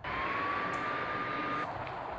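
Opening sound of a music video played on a laptop: a sudden steady rushing noise with a thin whistle rising slightly in pitch, the whistle stopping shortly before the end.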